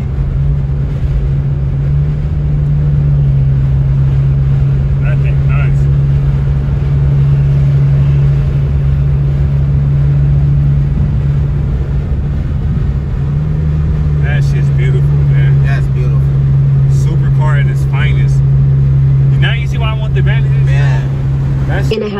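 Lexus RC's engine droning steadily at freeway cruise with road rumble, heard from inside the cabin.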